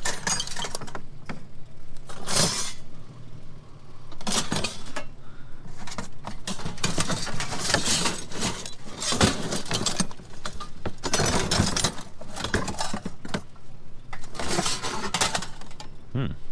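Loose scrap steel pieces clattering and clinking against each other as they are rummaged through and pulled out of a plastic bin, in repeated short clatters.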